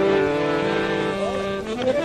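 Instrumental folk music: a harmonium holding sustained notes that step to new pitches a couple of times, with no singing.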